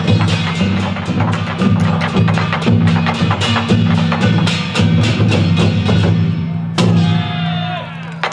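Taiwanese barrel-drum ensemble playing lion-dance percussion: fast, dense strokes on large barrel drums with deep booming hits and sharp rim and stick accents. Near the end, a loud metal crash rings on with a pitch that slides downward.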